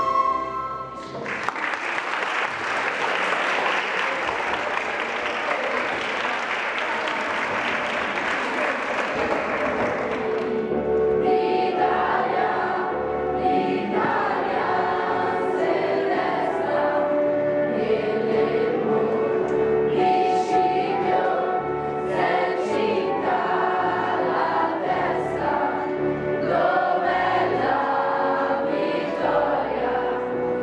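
A recorder ensemble's last notes, then applause for about nine seconds, then a group of school students singing together as a choir for the rest of the time.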